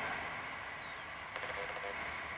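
Quiet outdoor background: a steady hiss with a faint, thin high tone, and a faint short hum near the end.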